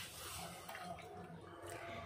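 Faint sloshing of buttermilk in a steel bowl as a small steel tempering pan and ladle are swirled through it.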